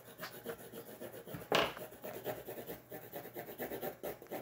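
Colored pencil scribbling quickly back and forth on paper, shading with the pencil tilted on its side, a run of short scratchy strokes. One louder knock about one and a half seconds in.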